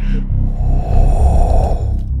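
Dark film-score bass pulsing low and steady under a breathy, rasping swell that builds for about a second and cuts off abruptly near the end.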